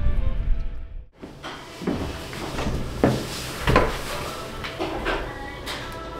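Wind buffeting the microphone, cut off abruptly about a second in. Then a quiet room with a few scattered knocks and clunks under soft background music.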